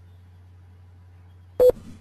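A steady low electrical hum under the recording, broken about one and a half seconds in by one loud, sharp click with a brief tone in it.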